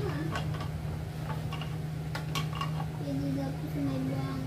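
Light plastic clicks and knocks as the housings and cartridges of a countertop three-stage water filter are handled and fitted, over a steady low hum.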